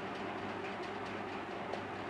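Steady low background hiss with a faint hum: room tone between spoken passages.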